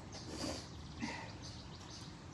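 Quiet outdoor garden ambience with faint, repeated bird chirps.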